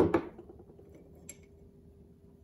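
Two sharp metallic clicks right at the start, then a faint tick a little over a second later, as the parts of a bronze low-angle block plane (lever cap and thick blade) are handled and lifted apart on a wooden workbench.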